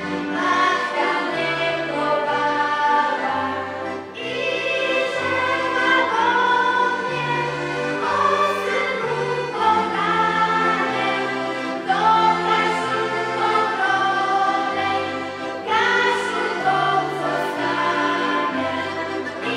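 A children's choir singing a song in unison, accompanied by accordions and guitar, with the bass line stepping from note to note under the held sung phrases.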